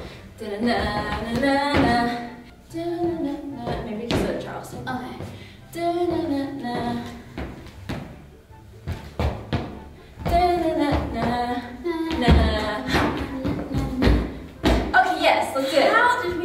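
A woman singing a pop melody to herself in wordless syllables, in short phrases with pauses, with a few thuds of feet landing on a wooden floor.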